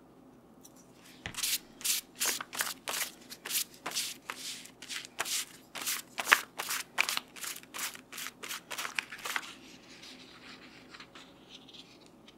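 Quick, evenly paced strokes across paper, about three a second, kept up for about eight seconds and then stopping, as the book's endpaper is worked while casing a book into its hardcover.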